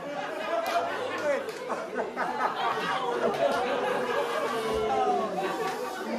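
Several voices talking over one another in a large hall, indistinct chatter with no clear words.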